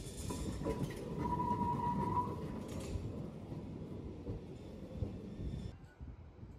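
A historic yellow Lisbon rail car running past on street rails, with a low rumble and a steady high whine for the first two seconds or so. The sound drops off suddenly near the end.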